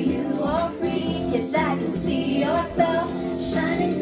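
A woman singing karaoke into a handheld microphone over a played backing track, the melody sliding up and down in sung phrases.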